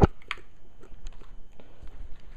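Handling noise from a heavy 15-inch car subwoofer being shifted on a cardboard box: a sharp thump right at the start and a smaller knock just after, then faint scattered taps and rubs.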